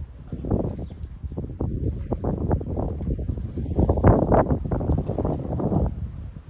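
Wind buffeting the phone's microphone in irregular low rumbling gusts, loudest about four seconds in.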